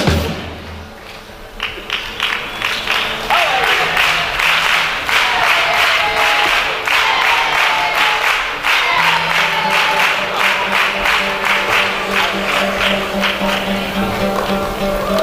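Theatre audience applauding and cheering. It starts about two seconds in, just after the group's drum stops, and goes on strongly to the end.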